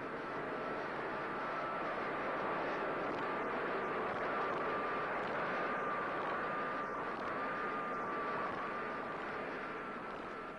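Steady engine noise of a tractor-mounted mist sprayer spraying rubber trees against downy mildew, with a faint high whine that wavers slightly in pitch.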